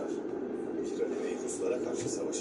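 A narrator's voice, heard from the exhibit's loudspeakers in a reverberant room, over a steady low hum.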